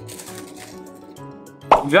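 Background music with a steady beat, under faint crunching as two people bite into thin, dry, crisp bread biscuits; a voice speaks near the end.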